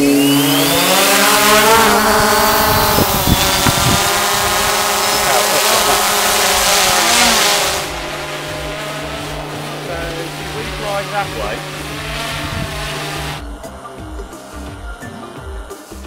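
DJI Phantom quadcopter's propellers spinning up and lifting it off: a loud whine that rises in pitch over the first couple of seconds, then holds steady. About eight seconds in it drops to a quieter, steadier hum as the drone flies.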